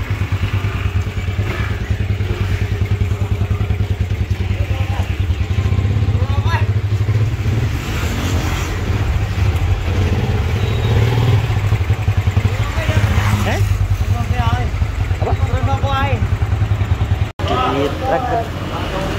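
Motorcycle engine running steadily while riding along, a low pulsing engine note, with voices talking over it now and then.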